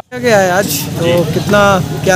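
A man speaking Hindi close to the microphone, over steady outdoor street noise with a low hum.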